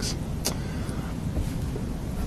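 A pause in speech: steady low rumble of room and microphone noise, with a short click about half a second in.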